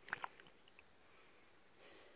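Mostly near silence, with a couple of brief soft squishes a moment in as a plastic gold snuffer bottle is squeezed over the pan.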